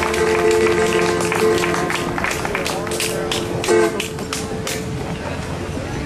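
Conjunto button accordion holding the closing chord of a tune over the band, with sharp percussive hits. The chord cuts off about four seconds in, leaving scattered sharp hits at a lower level.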